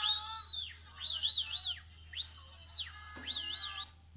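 A young woman's high-pitched, wavering screams, four cries of under a second each, played from a tablet video and picked up by a podium microphone.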